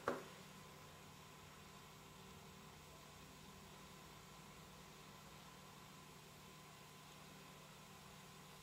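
Near silence: steady room tone with faint hiss and a low hum, broken by one sharp click just at the start. The quiet brushing of paint along the baseboard is not distinctly heard.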